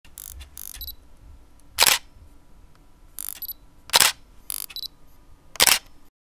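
Camera shutter clicks: three sharp shutter releases roughly two seconds apart, with softer clicks between them, two of which carry a short high beep like an autofocus beep.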